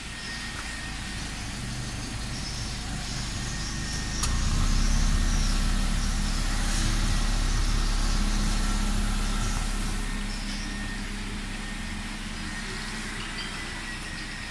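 Perodua Bezza 1.3's four-cylinder petrol engine idling steadily, heard at the exhaust tailpipe. The low idle hum grows louder from about four seconds in, holds for several seconds, then eases back.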